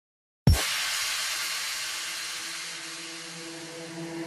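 Intro of a pop song: a sudden hit about half a second in, then a hissing noise wash that slowly fades while held low notes come in and grow louder.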